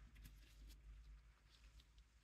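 Near silence: room tone, with a few faint light ticks.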